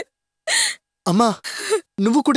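A woman sobbing: a sharp gasping breath about half a second in, then a wavering, crying voice.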